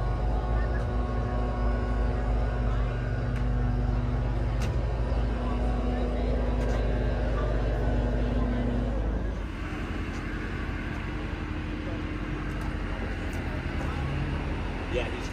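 Steady low mechanical hum with faint background voices; the hum drops noticeably about nine and a half seconds in.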